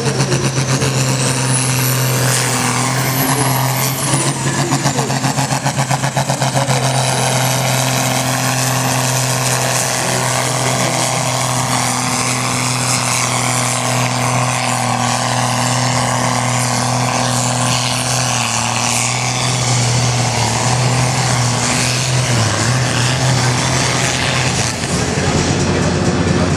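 Diesel engine of a 4.5-tonne sport-class pulling tractor running flat out under load while it drags the weight-transfer sled down the track: a steady, loud, deep drone held throughout, with a thin high whine that rises over the first few seconds and again about seven seconds in.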